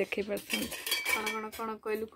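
Metal kitchen utensils, a flat spatula-like one among them, clinking and scraping against each other as they are handled.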